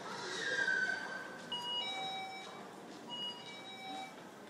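An electronic two-note chime, a higher note followed by a lower one, sounding twice about a second and a half apart, after a short falling tone near the start.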